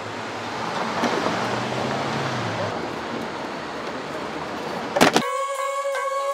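City street traffic: a passing car's engine hum and tyre noise swell and fade. About five seconds in come a couple of sharp knocks, then music starts.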